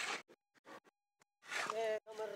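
A goat bleating in the second half, a wavering call. A short burst of noise at the start.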